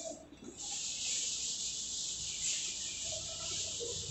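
Chalkboard duster rubbing chalk off a blackboard: a steady, even hiss that starts about half a second in.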